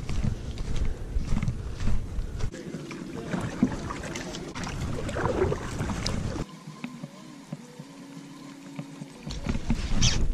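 Kayak paddling heard close on a head-mounted action camera: water sloshing and dripping from the paddle strokes and scattered knocks of the paddle against the plastic hull. At the start there are footsteps on dry pine-needle ground. The background sound changes abruptly a few times where short clips are cut together.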